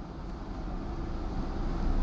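Marker writing on a whiteboard over a steady hum of room noise.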